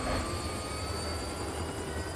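Helicopter on the pad with its rotor turning: a steady rhythmic blade chop over a low engine rumble, with a high turbine whine rising slightly in pitch.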